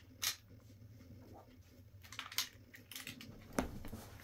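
Handling noise of two pistols being picked up and held together: a few scattered clicks and knocks, the loudest a little before the end.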